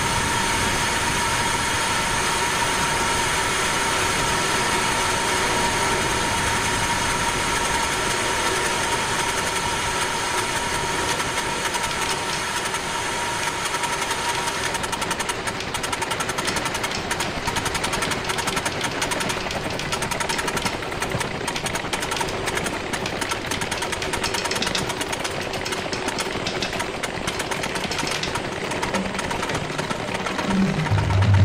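Electroacoustic music played live through loudspeakers: a dense, continuous rushing noise with a few steady high tones held through it. About halfway through, the tones fade and a fast crackling grain takes over.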